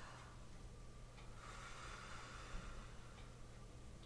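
A faint, slow inhale, a soft hiss that swells from about a second and a half in, over quiet room tone: a breath drawn in before starting a phrase on the piano.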